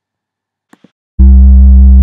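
A loud, sustained electronic music tone with heavy bass begins abruptly about a second in, after a short silence broken by two faint clicks. It is a single held chord, the start of a logo sting.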